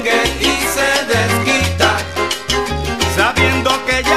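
A salsa band playing at full volume, with a bass line that changes note about every half second and steady percussion strokes.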